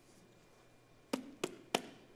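Three quick, sharp knocks about a third of a second apart, starting about a second in, against near-silent room tone.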